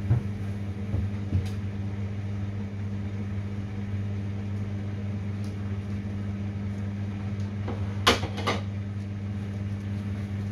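Samsung front-loading washing machine tumbling a small delicates load in water: a steady motor hum with a few light knocks, and two sharper knocks close together about eight seconds in.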